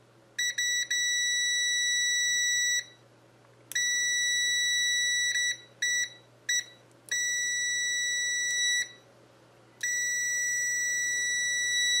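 Continuity buzzer of a Venlab VM-600A digital multimeter beeping with a steady high-pitched tone each time the test probe tips touch. It gives four long beeps of about two seconds each, with a few short blips between them as the contact is made and broken.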